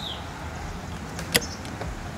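Outdoor background with a steady low rumble, a short high chirp at the very start, and a single sharp click a little past halfway through.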